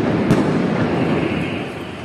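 The echoing rumble of a loud street blast dying away slowly, with a brief sharp crack about a third of a second in.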